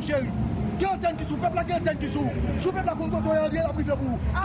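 A man talking loudly and without pause in Haitian Creole, over a steady low rumble of street traffic.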